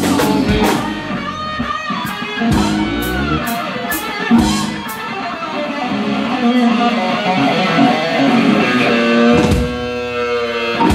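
Live blues-rock band playing, led by an electric guitar solo with bent, gliding notes over drums and cymbals.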